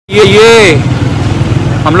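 Street traffic with a motorcycle engine running close by, a steady low rumble. It opens with a brief, loud, high-pitched call that dips in pitch as it ends.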